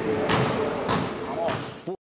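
Basketballs bouncing on a sports hall's wooden court, sharp echoing thuds about every 0.6 s, three in all, over the hall's background hum; the sound cuts off suddenly near the end.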